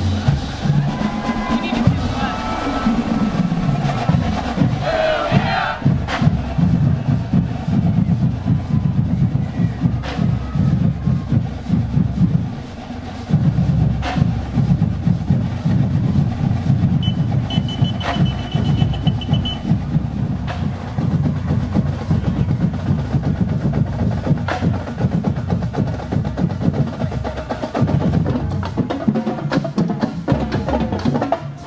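Marching band drumline (snares, tenors and bass drums) playing a steady street cadence with rim clicks as the band marches.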